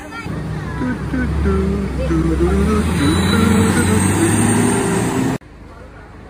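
Diesel engine of a city bus rumbling and growing louder as the bus moves off, with a voice heard over it; the sound cuts off abruptly a little after five seconds in.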